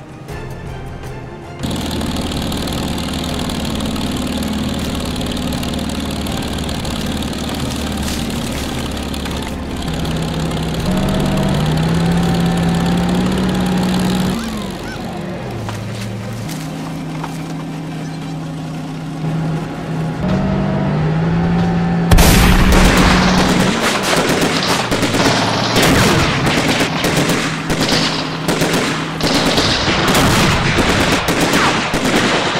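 Dramatic score with long, sustained low notes for about twenty seconds. Then, about twenty-two seconds in, a sudden loud burst of rapid gunfire from automatic rifles breaks out and keeps going, a battle scene's shooting.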